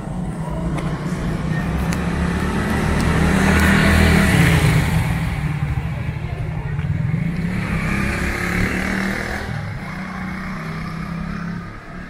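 A motor vehicle's engine passing close by on the street. It rises to its loudest about four seconds in and fades, then swells a little again near eight seconds.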